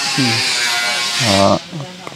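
A man's voice speaking in short phrases, over a steady hiss that cuts off about a second and a half in.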